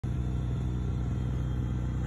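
A steady low rumble that stays even throughout, with no distinct events.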